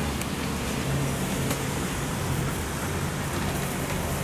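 Steady background noise of road traffic with a low hum that swells briefly about a second in.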